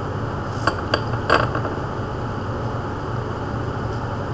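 Three short, light clinks close together about a second in, over a steady low background hum.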